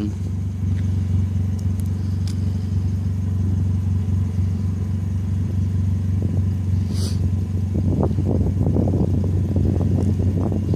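A car engine idling: a steady low rumble, with a single brief click about seven seconds in and a rougher, more uneven stretch near the end.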